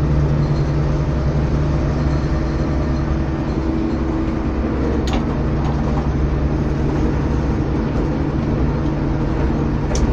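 Bizon combine harvester's diesel engine running steadily as the combine drives along a road, heard from the driver's seat in the cab.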